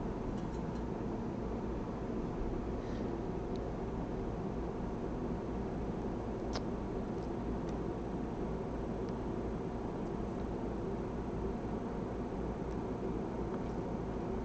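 Steady background hum of a workshop room, with a few faint, isolated clicks.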